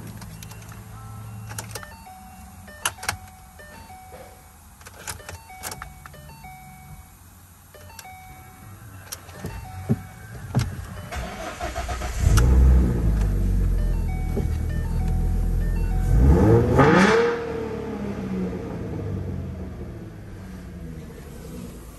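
A Ford Mustang's engine is cranked and catches about twelve seconds in, then runs at a fast idle. Near the end it revs once briefly and settles back to a steadier idle. Before the start there are a few light clicks and short electronic chime tones from the cabin.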